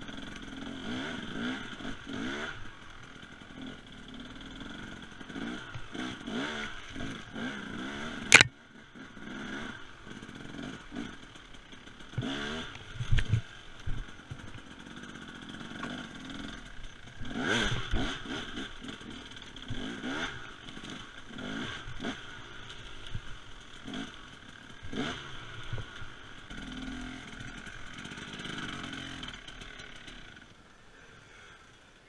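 Husaberg TE300 two-stroke enduro motorcycle revving up and dropping back again and again as it is ridden over roots on a steep woods trail, with clattering from the bike. A single loud sharp knock comes about eight seconds in.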